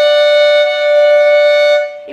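Violin double stop: two notes bowed together and held steadily, with the lower note, played with the third finger, raised slightly so the pair sounds in tune in just intonation. The chord stops shortly before the end.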